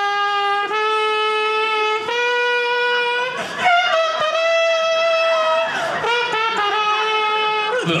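A man's voice imitating a horn-like wind instrument into a microphone: a slow tune of about five long held notes, the pitch stepping up through the first half, then dropping back for the last note.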